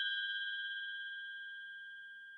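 A bell-like chime ringing out after being struck, its clear tone with a few higher overtones fading steadily, with a slight waver.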